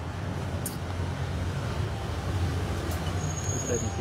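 Low, steady outdoor rumble, growing a little louder toward the middle, with a man's voice starting right at the end.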